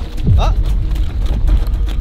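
Wind buffeting the microphone on an open tidal flat: a steady low rumble.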